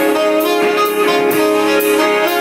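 Live indie rock band playing, with a saxophone holding sustained notes over a steady drum beat that strikes about twice a second.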